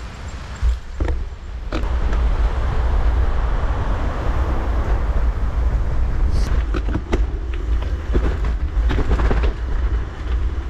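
Bicycle riding over a dirt forest trail: continuous tyre noise and wind buffeting on the microphone, with several sharp knocks and rattles from the bike as it hits bumps.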